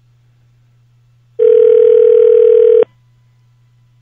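Telephone ringback tone heard over a phone line: one steady ring about a second and a half long, starting about a second and a half in, over a faint low line hum.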